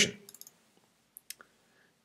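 Two faint computer mouse clicks in quick succession, a double-click, over near silence.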